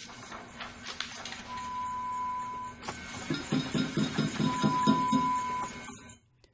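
Film sound effects: a low machine hum with two long, steady beeps, then a run of rhythmic muffled thumps, about three to four a second, that stops suddenly at the end.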